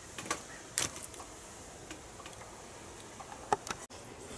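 A few small sharp clicks and taps from hands handling plastic XT60 connectors and their leads, the loudest just under a second in and again near the end.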